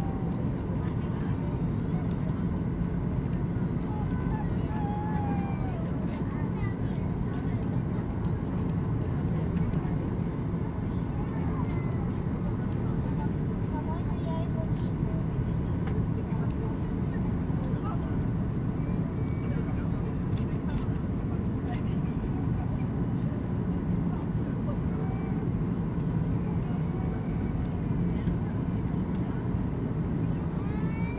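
Steady cabin drone of a Boeing 737-800 on approach with flaps extended: its CFM56 turbofans and the airflow over the fuselage make an even, deep noise. Faint passenger voices sound through it.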